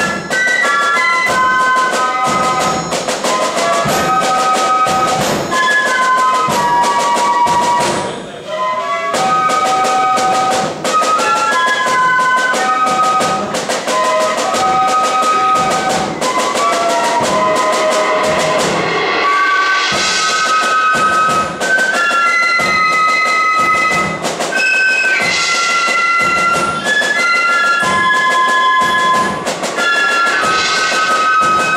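A flute band playing a tune live: flutes carry the melody in held notes over steady side-drum strokes, with a short break about eight seconds in.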